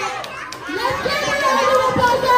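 Excited chatter of several voices talking and exclaiming over one another, dipping briefly and then swelling again about half a second in.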